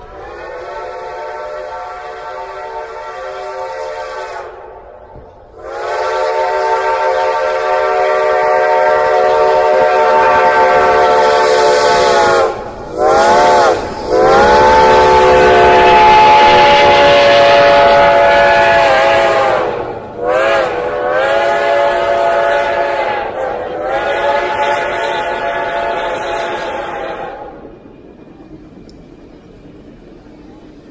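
Reading & Northern T-1 No. 2102, a 4-8-4 steam locomotive, passing close while sounding its chime steam whistle for a grade crossing: two long blasts, a short one, then a long one, followed by two more long blasts. The notes slide in pitch as they start and stop. Near the end the whistle stops and only the rumble of the passing train remains.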